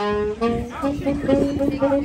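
Small street band of saxophones and horn starting to play: a loud held note comes in at the start, followed by a few shorter notes at other pitches, with voices underneath.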